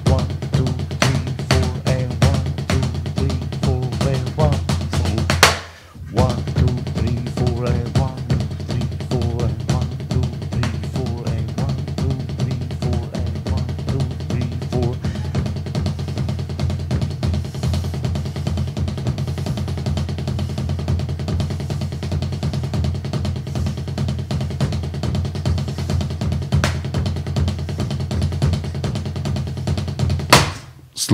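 Drum kit played with sticks: a dense, continuous run of strokes, a rudiment phrased in nine, over steady music underneath. The playing breaks off briefly about six seconds in.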